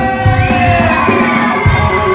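Live rock band playing loud, with electric guitars holding long notes that bend in pitch over drums and a single drum hit near the end, and the crowd cheering and whooping.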